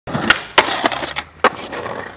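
A skateboard rolling on hard ground, with four sharp clacks of the board in the first second and a half.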